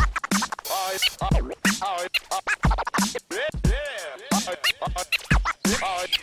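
Background music with a steady low beat and sliding, wavering tones over it.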